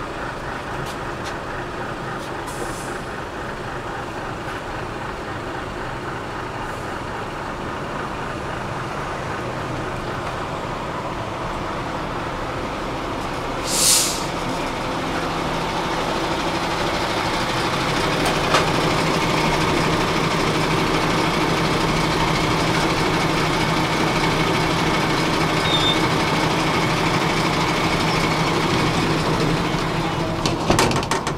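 Road traffic beside a stopped tram: a steady hum of vehicles, a short, loud air-brake hiss about halfway through, then the diesel engine of a MAN TGX truck running close alongside, louder through the second half.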